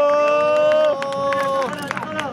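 Several horns blowing long, steady overlapping notes that swell in and then stop about a second and a half in, with sharp claps or clicks scattered through.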